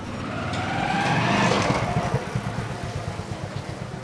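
Motorcycle engine pulling away, swelling to its loudest about a second and a half in and then fading as it moves off.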